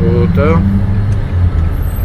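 Steady low road and engine rumble heard from inside a moving car in city traffic, with a voice speaking briefly in the first half second.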